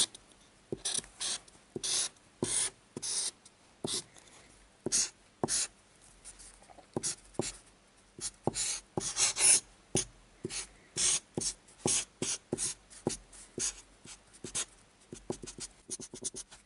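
Felt-tip permanent marker drawing on a sheet of paper: many short, irregular strokes with brief pauses between them.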